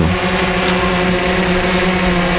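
Xdynamics Evolve quadcopter hovering low: its propellers and motors give a steady hum that holds one fixed pitch.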